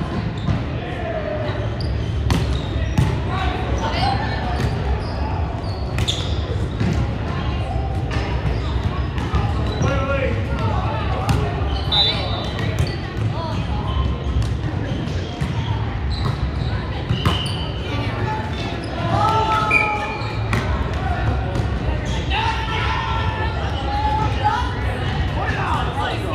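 Sharp ball impacts at irregular moments, echoing in a large gymnasium, over a steady low rumble of hall noise and players' distant voices.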